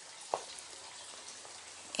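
Faint, steady outdoor background hiss during a walk through a garden, with one soft click about a third of a second in.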